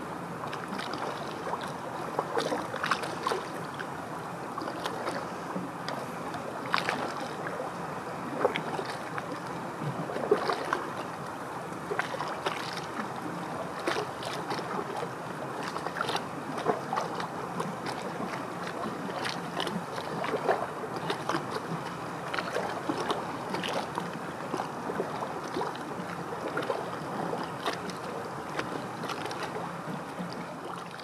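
Small lake waves lapping and splashing against rocks and a concrete shore wall: a steady wash broken by many small irregular slaps.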